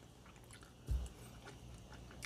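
Faint mouth sounds of a spoonful of soft, sorbet-like ice cream being eaten, with one dull low thump about a second in.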